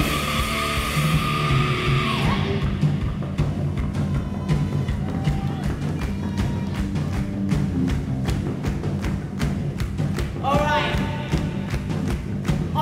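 A live heavy-metal band playing, with drum kit, bass guitar and electric guitar. A held high note ends about two seconds in. Then comes an instrumental stretch with a steady, even drum beat, and a voice comes back in near the end.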